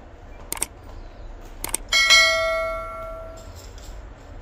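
Subscribe-button animation sound effect: mouse clicks twice, then a bell ding about two seconds in that rings out and fades over a second and a half.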